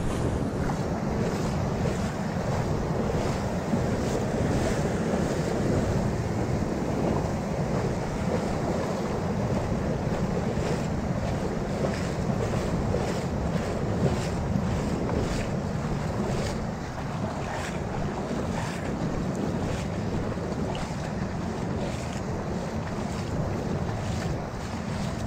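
Wind buffeting the microphone over the steady wash of shallow surf, with faint irregular ticks.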